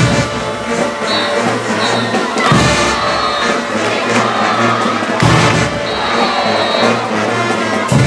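Brass band playing caporales music: trumpets and trombones over a repeating sousaphone bass line and drums, with heavy accented band hits about every two and a half seconds.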